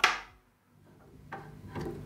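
A single sharp pop through the hi-fi speaker as the capacitor test lead is let go. It dies away within a third of a second, then a faint low hum and a couple of light ticks come up toward the end.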